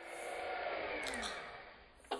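A dramatic sound effect from the music video's soundtrack: a swell of rushing noise with a slowly falling tone. It builds over the first second and fades away near the end.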